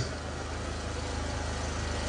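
A steady low hum under a haze of background noise, with no speech.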